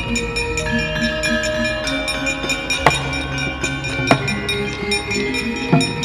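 Javanese gamelan ensemble accompanying a wayang kulit performance, with metallophone tones ringing steadily. Sharp percussive strikes cut through, three of them standing out in the middle and near the end.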